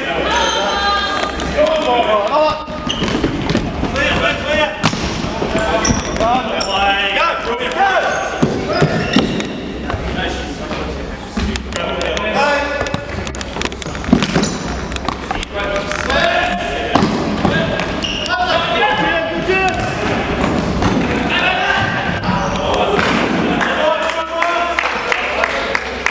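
A futsal ball being kicked and bouncing on a wooden sports-hall floor: scattered sharp thuds that echo in the large hall, the loudest about halfway through. Voices of players and spectators talk and call throughout.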